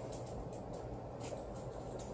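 Quiet room tone with a steady low hum and a few faint light clicks and rustles of hands working monofilament line on a PVC pipe frame.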